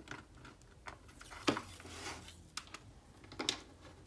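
Quiet handling sounds of a roll of skinny washi tape being unrolled and laid across a paper planner page: a few scattered light clicks and taps of fingernails and tape roll.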